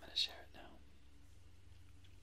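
A brief whispered sound from a soft-spoken voice about a quarter second in, with a sharp hiss, then a low steady hum.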